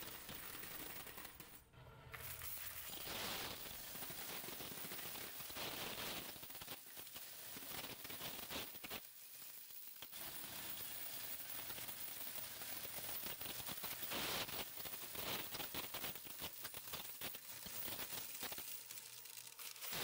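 Glory coin counter counting a hopper of quarters: a fast, continuous rattle of coins feeding through the machine and dropping down its chute into a bucket, with a brief lull about halfway.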